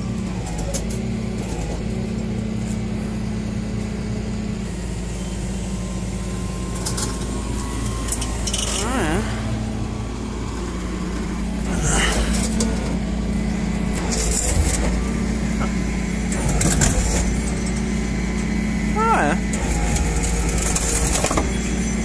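Flatbed tow truck's engine running with a steady low hum while its winch pulls a car up onto the deck, with several scrapes and knocks in the second half.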